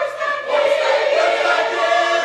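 Gospel choir of men and women singing, coming in together sharply at the start after a brief silence and holding sustained chords.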